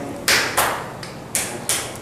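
A run of about five sharp taps, unevenly spaced, each dying away quickly.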